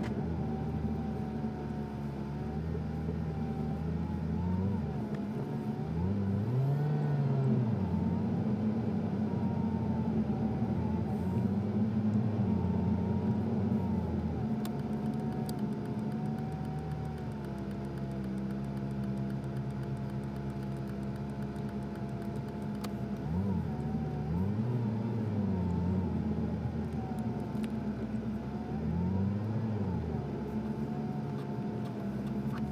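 A car's engine heard from inside the cabin during slow driving, its note rising and falling several times as the car speeds up and slows down.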